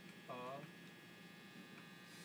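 A steady electrical hum made of several fixed tones, with one brief spoken syllable about a third of a second in.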